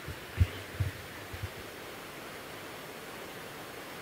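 A few soft low bumps in the first second and a half, the kind a handheld microphone picks up when it is handled, then a steady hiss of the microphone's room tone.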